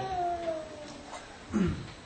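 A person's voice drawing out a long vowel that slowly falls in pitch, followed about a second and a half in by a short falling murmur.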